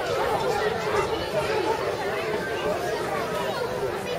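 Several people's voices chattering at once, overlapping and unintelligible, with no single speaker standing out.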